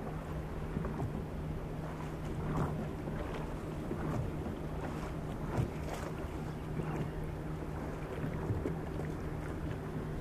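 A boat motor running steadily with an even low hum, under water lapping against an aluminum fishing boat's hull, with a few small knocks on the boat.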